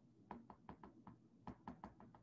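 Faint, irregular taps of a stylus on a tablet's glass screen during handwriting, about ten in two seconds.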